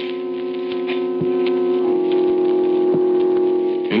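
Organ music: a sustained chord that moves to a new chord about halfway through. A couple of faint clicks of surface noise from the old disc recording sound over it.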